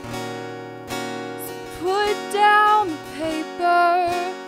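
Acoustic guitar strummed steadily, with a woman's singing voice entering about two seconds in.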